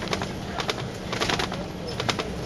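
Ride inside a Volvo Olympian double-decker bus under way: a steady low engine drone with frequent irregular clicks and rattles from the bodywork.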